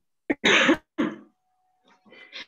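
A person clearing their throat: a short catch, then a louder rasp, then a shorter one, all within about a second.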